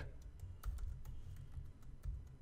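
Faint, scattered keystrokes on a computer keyboard: a few separate taps.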